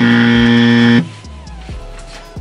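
Game-show style "wrong answer" buzzer sound effect, one loud steady buzz about a second long that starts and cuts off suddenly, marking a failed attempt.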